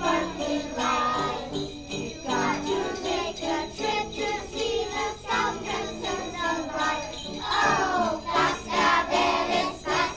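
Jingle bells shaking rhythmically along with young children singing a Christmas carol.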